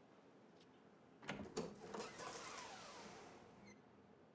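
A door opening: a few sharp latch clicks, then a short swishing sound that falls in pitch and fades.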